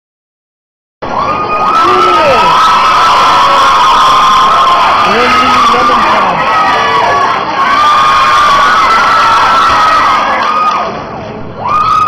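Audience cheering and screaming loudly, with many overlapping shrill whoops and shouts. It starts about a second in, dies down briefly near the end, then swells again.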